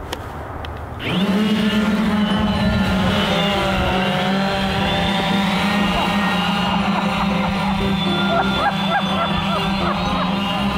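Electric multirotor drone's motors and propellers starting up suddenly about a second in, then a steady, pitched hum as it lifts off and flies with a small Christmas tree slung beneath it.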